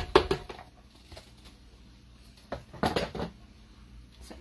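Black plastic ground-beef tray knocked and shaken against a slow cooker, emptying raw ground beef into the pot: a quick run of clattering knocks at the start and another about two and a half seconds in.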